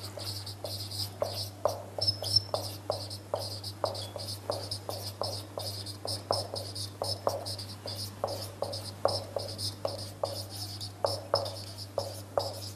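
Felt-tip marker writing on a whiteboard: a quick run of short scratchy strokes, about two or three a second, with a high squeak on many of them. A steady low hum runs underneath.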